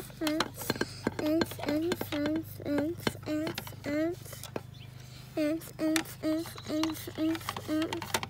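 A voice chanting one short syllable over and over on nearly the same note, about three times a second, with a pause of about a second midway: mouth-made dance music. A steady low hum runs underneath.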